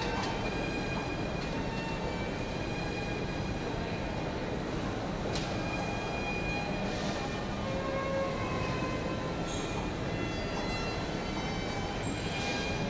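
Steady rumble of an underground metro station, with several faint high whining tones held throughout and a few short clicks.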